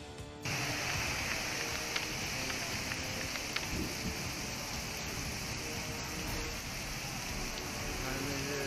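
Heavy rain pouring down on a road in a steady, dense hiss, starting about half a second in.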